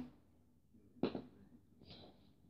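Mostly quiet room, broken by one short spoken word about a second in and a faint short tap near the end.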